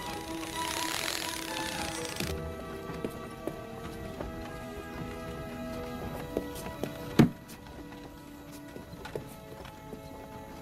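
Soft film score with long held notes. A breathy rush of noise swells and stops in the first two seconds, and a single sharp thump sounds about seven seconds in.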